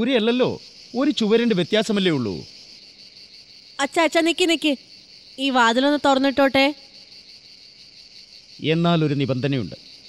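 Crickets chirring steadily as a high, even night-time background, with short spoken lines breaking in over it several times.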